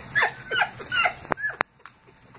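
A woman laughing in a run of short falling-pitch 'ha' sounds, about three a second. The laugh breaks off with a sharp click about one and a half seconds in.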